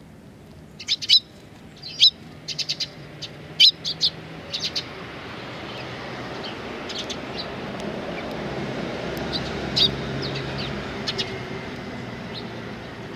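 Eurasian tree sparrows chirping: short, sharp, high chirps in quick clusters, busiest in the first few seconds, with a few more later. A low rumble swells in the background in the second half.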